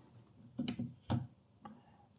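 Plastic clicks and knocks of a handheld clamp meter being handled and its jaws closed around a battery cable: a cluster of clicks just over half a second in, a sharper click about a second in and a faint one near the end.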